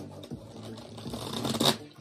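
A deck of tarot cards shuffled by hand: a soft papery rustle and riffle of cards that grows and is loudest about one and a half seconds in, then falls away.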